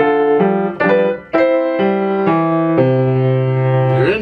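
Grand piano playing a run of loud sustained chords, about half a second apart, with a short break a little past a second in. The passage ends on a long held chord with a strong low bass note, the piece's loud closing measures.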